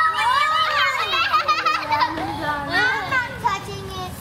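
Several young children talking and calling out over each other, their high voices overlapping.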